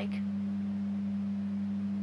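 A steady low electrical hum, two constant low tones with no change, left bare in a pause between words.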